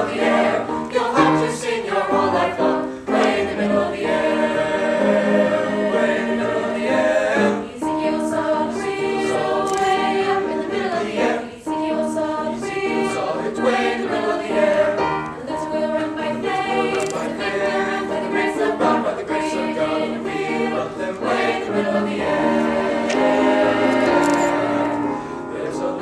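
Mixed choir of young male and female voices singing a sustained choral piece, with a brief breath between phrases partway through.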